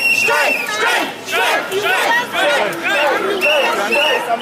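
A crowd of picketers shouting and cheering together, with a whistle blown in one long blast at the start and short, repeated blasts near the end.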